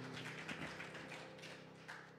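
The last held chord of a song dying away under scattered hand clapping from a small congregation, the claps irregular and soon thinning out.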